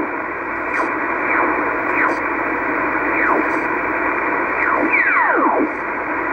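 Hiss from a Yaesu FT-301 HF transceiver's speaker as its tuning dial is turned across the 20-metre band. Whistling tones slide down in pitch as signals are swept past: several faint ones, then two stronger ones close together near the end.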